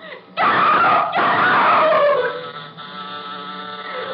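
A loud scream that falls in pitch over about two seconds. Then, from a little past the middle, a steady electric buzzer tone: the elevator call buzzer.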